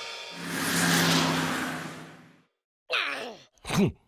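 A rushing noise with a low steady hum swells and fades over the first two seconds. About three seconds in, a cartoon larva character gives two short groans.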